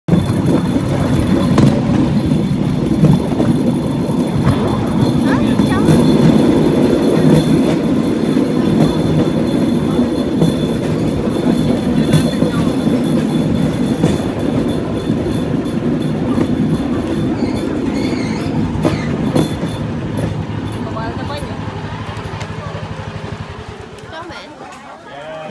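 Bamboo train (norry) running on rails, heard from aboard: its small engine running and the wooden platform rumbling and rattling over the track, loud and dense. The sound gradually fades over the last several seconds as the car slows to a stop.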